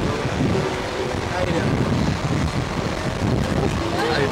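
Wind rumbling across the microphone of the ride capsule's onboard camera, with indistinct voices underneath.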